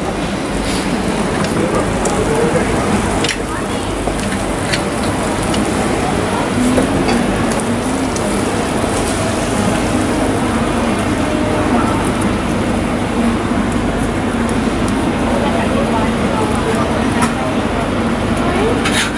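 Raclette cheese under an electric grill, making a steady crackling hiss, with indistinct crowd chatter behind it.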